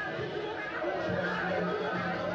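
Several voices calling out indistinctly, over a steady low hum that grows stronger about a second in.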